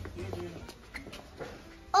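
Faint, brief vocal sounds over a low, steady background rumble, then a loud exclamation that starts right at the end.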